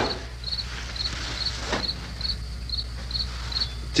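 Cricket chirping steadily, short high chirps about twice a second, over a low steady hum.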